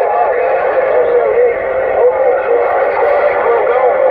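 Uniden Grant XL CB radio receiving on channel 6 (27.025 MHz): several stations coming in at once over each other, their voices and tones warbling and garbled through the radio's thin, narrow-band speaker sound.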